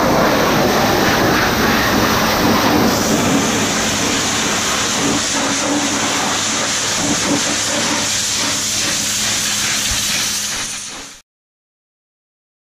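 Pressure washer jet blasting water onto a greasy gearbox casing: a loud, steady hiss of spray with a steady low hum underneath. It cuts off suddenly near the end.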